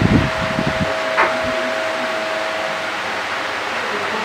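Steady hiss with a thin, held tone for about the first three seconds.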